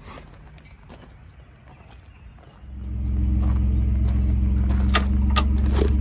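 Ford F-150 pickup engine idling steadily, setting in about two and a half seconds in after a quieter stretch. A few light clicks sound over it near the end.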